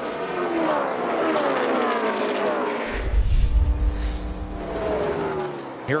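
NASCAR Cup stock car V8 engines at full speed on the oval, their pitch falling as cars sweep past. About three seconds in a deeper, louder engine rumble takes over and holds a steady note.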